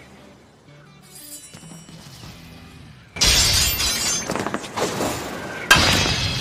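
Anime episode soundtrack: faint music, then about three seconds in a sudden loud shattering crash that carries on and slowly dies away, with a second crash near the end.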